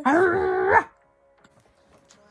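A woman's loud, drawn-out open-mouthed vocal cry. Its pitch rises and then holds for just under a second before it stops abruptly.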